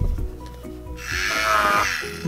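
The motor of a Play-Doh toy electric drill whirring for about a second, starting about halfway through, as it bores a hole into a disc of Play-Doh, over background music.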